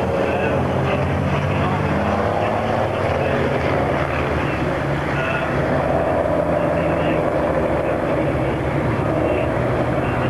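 Race truck diesel engines running on a circuit as the trucks drive past, a steady low drone with higher engine notes that rise and fall.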